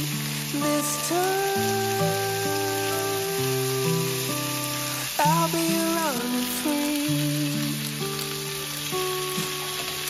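Beef steaks and sliced squash sizzling as they sear in an enameled cast-iron pan, under background music with sustained notes.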